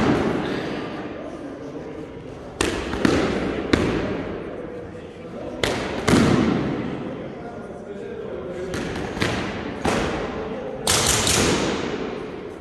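Training swords striking shields and armour in sword-and-shield sparring: about ten sharp blows, in bursts a few seconds apart, each echoing in a large hall.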